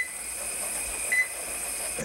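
Heart monitor giving short, high single-pitch beeps, about one every second and a bit, twice here, each beep marking the patient's heartbeat, over a steady hiss.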